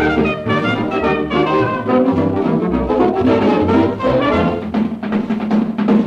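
A 1939 Odeon shellac record of a dance orchestra playing an instrumental passage of a foxtrot, without vocals.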